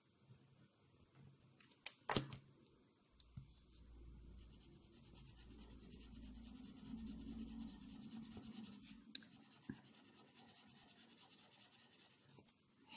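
A couple of light clicks about two seconds in, then a Micador ColouRush coloured pencil rubbing back and forth on paper for about six seconds, shading a faint, scratchy colour swatch.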